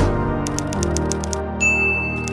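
Typewriter sound effect over a sustained music chord: a short noisy burst at the very start, then a quick run of about eight key clicks, then a bell ding that rings on to the end.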